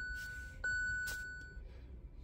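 Electronic chime tones. One rings on from just before and fades, then a click about half a second in is followed by a second identical chime that fades over about a second. A short tick comes a little after.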